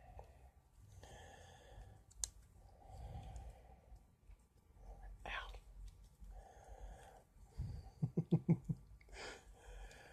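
Quiet handling of a small plastic toy as the robot figure is worked out of its car shell, with breathing and light rustling, and one sharp click about two seconds in. Near the end comes a quick run of short low pulses, the loudest sound here.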